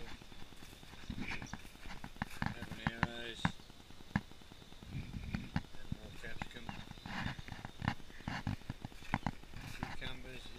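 Footsteps crunching on gravel and plant leaves brushed by hand: a run of irregular crunches and clicks, with a brief voice-like sound about three seconds in.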